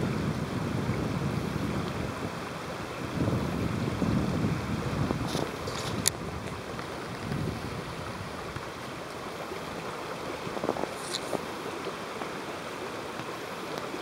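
Steady rushing background noise, with a faint click about six seconds in.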